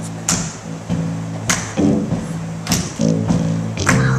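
Live gospel music: a keyboard holding sustained low chords under a sharp, even hit on the beat, a little under one a second.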